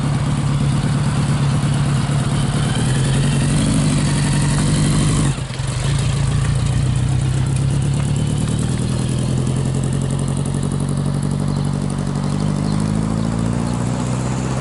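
Motorcycle trike engine running as the rider pulls away, its pitch rising a few seconds in. About five seconds in the sound briefly drops out, then the engine runs steadily again with slow changes in pitch.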